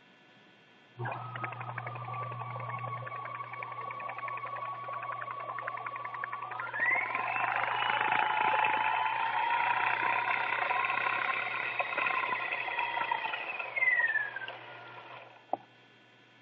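Pfaff Creative 1473 CD sewing machine winding a bobbin: a motor whine starts about a second in, rises in pitch as it speeds up about seven seconds in, then falls and stops near the end.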